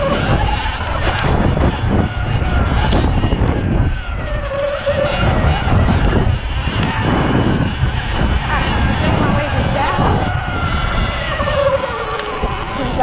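Sur-Ron Light Bee X electric dirt bike being ridden over grass: a heavy, rough rumble of wind on the microphone and the ride, with the electric motor's whine rising and falling in pitch as the speed changes.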